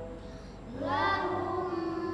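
Children's voices chanting a Quran verse back in recitation. After a brief lull, the voices rise in pitch about two-thirds of a second in and settle into a long held nasal hum on the doubled 'm' of 'lahum min'. This is the ghunnah of idgham mimi, drawn out.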